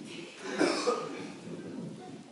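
A single cough about half a second in, followed by softer low sounds.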